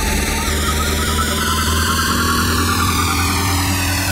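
Loud hardstyle music played by DJs: a sustained, distorted synth drone over a deep bass, with a sweeping effect that slowly falls in pitch.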